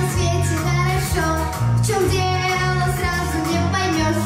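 A girl singing into a microphone over a recorded backing track, with a steady bass line under her voice.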